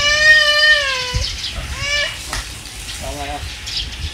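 A young child's long, high-pitched wordless vocal sound, held for about a second and sliding slightly down in pitch. A shorter high sound follows near the middle, and a brief lower voice about three seconds in.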